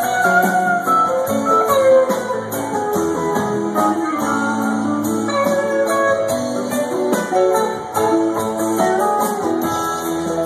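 Live rock band playing an instrumental jam with electric guitars to the fore over keyboards, drums and steady cymbal strokes, recorded from the audience.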